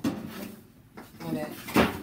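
A large primed fiberglass hood liner panel being handled and shifted: a short knock at the start and a louder, rattling knock near the end as it bumps against something.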